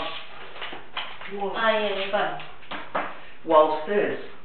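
A person's voice: brief spoken or vocal sounds in two short passages, about one and a half seconds in and again near the end.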